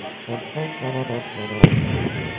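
A single sharp firework bang about one and a half seconds in, with a short ring after it, over music with singing.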